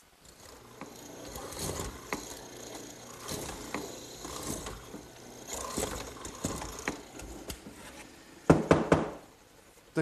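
Benchtop hollow-chisel mortiser with a half-inch chisel and bit cutting mortises in a pine stretcher: several plunges of the chisel and bit chop and scrape through the wood. A brief loud burst near the end.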